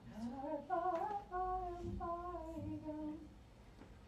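A woman singing a short melody. It rises over the first second, holds a few longer notes, then eases down and stops a little after three seconds in.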